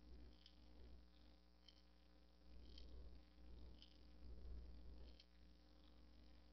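Near silence: a faint, steady low electrical hum, with faint short ticks about once a second.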